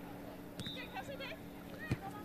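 Faint, distant shouts and calls of footballers on the pitch, over a steady low hum.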